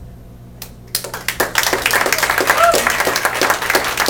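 Small audience clapping at the end of a song, starting about a second in after the last notes fade, with a short whoop near the middle.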